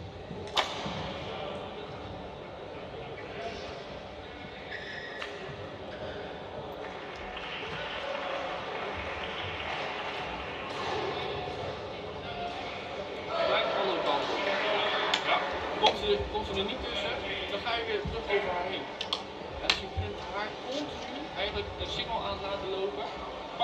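Quiet talk between a badminton coach and his two players in a large indoor hall. Scattered sharp knocks and clicks sound in the background and come more often in the second half.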